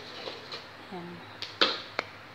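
Wooden spatula stirring thick pineapple jam in a metal pan, ending with a sharp knock of the spatula against the pan near the end, which is the loudest sound. A woman says one short word partway through.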